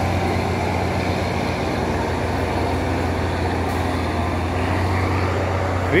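Forestry skidder's diesel engine running steadily at a constant speed, an even low drone.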